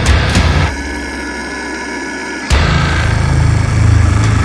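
Heavy metal song with a drum kit played along, the bass drum hitting rapid even notes under the full band. About a second in the kick drum drops out for roughly two seconds, then the rapid kick pattern returns.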